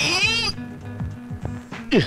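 Film background music with steady low tones, opened by a short, high-pitched wavering cry that rises and falls over about half a second. A quick downward glide follows near the end.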